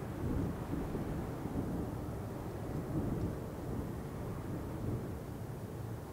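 Distant, uneven low rumble of a taxiing Boeing 777-300ER's GE90 turbofans at low power, with wind on the microphone.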